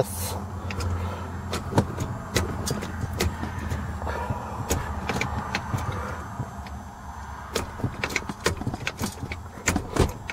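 Five-speed manual gear lever being worked by hand through the gears, its shift linkage giving off irregular clicks and clunks.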